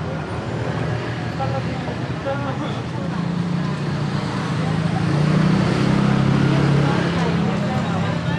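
Road traffic with a motor vehicle's engine humming close by, growing louder about three seconds in and easing off near the end, over scattered voices of people on the street.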